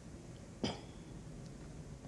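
Quiet room tone in a pause between speech, with one short throat-clear from a woman just over half a second in.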